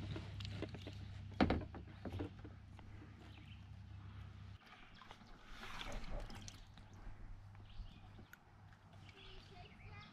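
Faint kayak paddling: a paddle dipping into calm water, with a few brief sharp sounds in the first two seconds, the loudest about a second and a half in.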